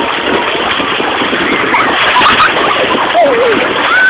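Steady rush of sea water splashing, with people's voices calling out over it a couple of times in the second half.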